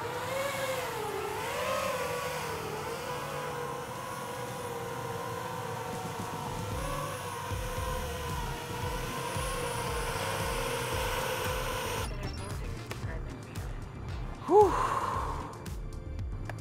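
Octocopter's eight motors and propellers whining in flight, the pitch wavering up and down with throttle, then stopping abruptly about three-quarters of the way through. A low, even pulse runs underneath from about halfway, and a short, loud rising-and-falling tone comes near the end.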